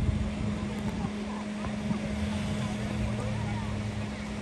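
A steady low hum over outdoor background noise, with a lower hum joining in the second half.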